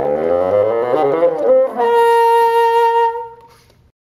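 Bassoon playing a rising run that climbs into a long, steady high note, which dies away about three and a half seconds in.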